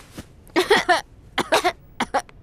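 A woman coughing in two short bouts, set off by breathing in dust.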